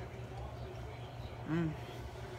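A woman's short appreciative "mmm" about a second and a half in, savouring a mouthful of cheese, over a steady low background hum.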